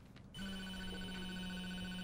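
A mobile phone signalling an incoming call: one steady electronic tone that starts about a third of a second in and holds to the end.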